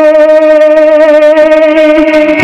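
Harmonium holding one steady note with no pitch change.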